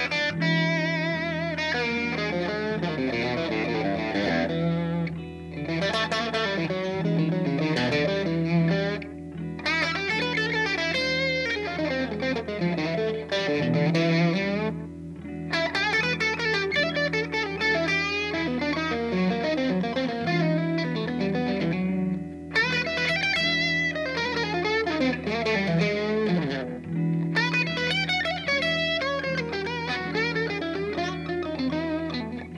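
Fender Stratocaster electric guitar improvising fast single-note jazz-fusion lines over a steady held E7 chord, deliberately playing in and out of the key: exaggerated 'outside' notes that resolve back to chord tones. The lines come in phrases with short pauses, some with wavering, vibrato-laden notes.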